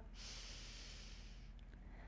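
A woman's long, deep inhale, a faint breathy hiss that fades out about a second and a half in: a deliberate full yoga breath taken in downward-facing dog.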